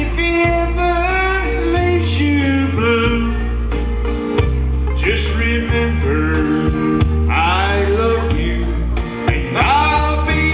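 A man singing a country song into a handheld microphone, over backing music with bass, guitar and a steady drum beat.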